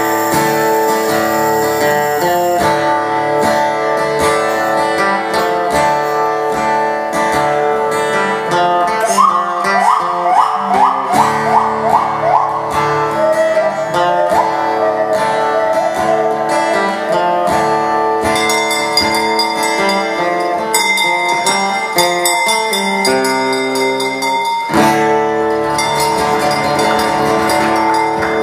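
Acoustic guitar played live in a delta-blues style, steady through the passage. About ten seconds in comes a quick run of short rising pitched slides, and in the last third a high ticking rattle from the vocalist's sound effects sits over the guitar.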